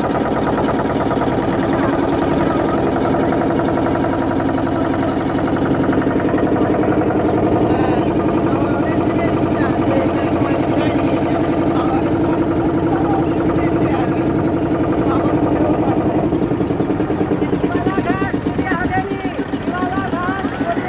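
A motorboat's engine running steadily at constant speed, a continuous drone with a fine, even beat.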